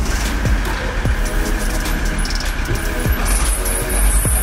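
VW Transporter T4 engine just started and running after an oil and filter change, heard as a steady mechanical noise. Background electronic music with a recurring kick-drum beat plays over it.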